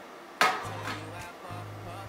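An empty metal baking tray set down on the worktop with one sharp clank that rings briefly, about half a second in, over background music with a steady bass line.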